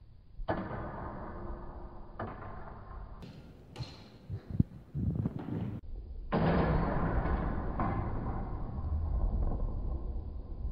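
Longsword sparring: shuffling footwork and movement noise, with small knocks and one sharp clack about four and a half seconds in. The background noise changes abruptly several times.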